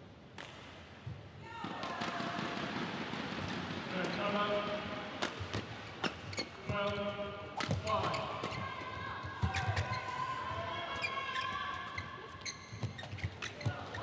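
Badminton rally in a large indoor hall: rackets strike the shuttlecock with sharp cracks and court shoes squeak, over a steady noise of crowd voices that rises about two seconds in.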